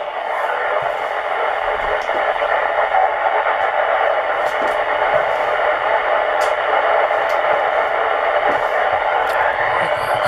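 An FM transceiver's speaker hissing with the weak, noisy signal of a distant 2 m Echolink node, received with the low-noise amplifier switched off. The hiss rises over the first second as the volume comes up, then holds steady.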